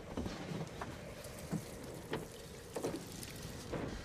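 A low rumble with a handful of soft, separate clicks and knocks scattered through it, about five in four seconds.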